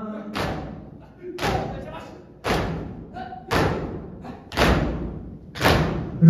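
Group of mourners beating their chests in unison (matam), six heavy thumps about a second apart, each echoing in the hall.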